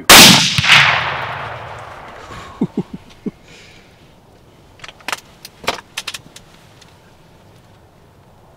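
Deer rifles, among them a .350 Legend, fired together on a count: two very loud reports about half a second apart, followed by a long echo rolling away over about two seconds. Short sharp clicks follow a few seconds later.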